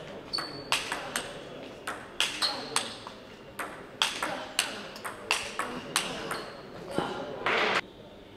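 Table tennis ball clicking off the rackets and the table in a fast rally, about two to three hits a second. A short burst of noise near the end closes it.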